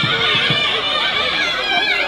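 Nadaswaram playing an ornamented Carnatic melody line that bends and slides continuously in a bright, nasal reed tone, with a couple of low drum strokes in the first half second.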